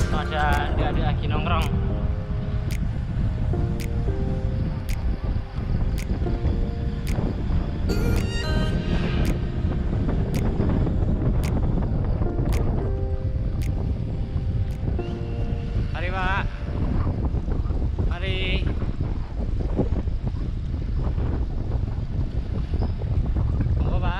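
Heavy wind noise buffeting the microphone of a camera on a moving bicycle, under background music with a melody and a steady tick about once a second.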